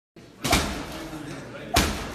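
Two boxing-glove jabs striking a hanging heavy punching bag, a little over a second apart, each a sharp thud with a short ring after. Voices murmur underneath.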